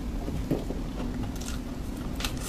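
Close-miked soft chewing and mouth sounds of eating whipped-cream sponge cake, with a sharp click about half a second in.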